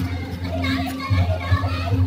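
Children's voices and background chatter, over a steady low hum.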